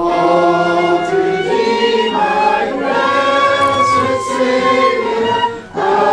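A congregation singing a hymn together, mixed voices holding long notes, with a brief break between phrases near the end.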